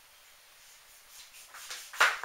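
Chef's knife slicing through a raw zucchini on a plastic cutting board: a few faint, crisp cutting sounds in the second half, after a near-quiet start.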